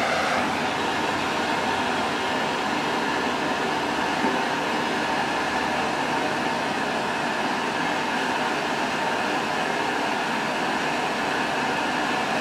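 Handheld propane torch burning with a steady, even hiss as its flame heats a TIG tungsten electrode to red-hot.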